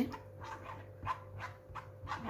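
A metal spoon pressing and scraping blended tomato pulp through a strainer over a steel pot. It makes quiet, rough swishing strokes about three or four a second.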